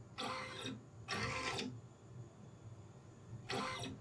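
The small motor of a motorized CNC dust-shoe mount running in three short bursts of about half a second each, driving the shoe mount up and down on the Z-axis.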